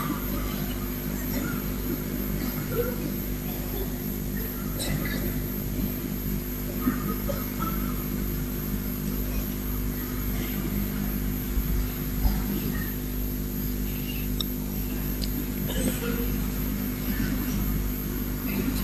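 Steady low electrical hum with a constant layer of hiss from the sound system, with no speech; a few faint, brief small sounds are scattered through it.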